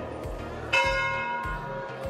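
A temple bell struck once about three quarters of a second in, ringing on and fading over about a second, over a steady low beat of about two thumps a second.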